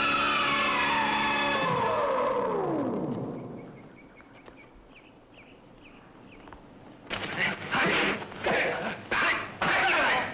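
Film score music ending in a long sliding fall in pitch over about three seconds, then a quiet stretch with faint short chirps. About seven seconds in, a series of loud, harsh noisy bursts begins.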